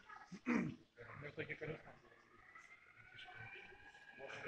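Indistinct chatter of several people in a large indoor hall, with a brief louder cry falling in pitch about half a second in.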